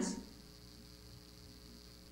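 Faint, steady electrical mains hum, with the last of a spoken word fading out right at the start.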